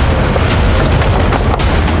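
Dramatic thriller background score driven by heavy booming percussion hits over a dense, loud music bed.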